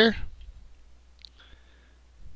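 A single faint computer mouse click about a second in, then a faint thin tone over a steady low hum.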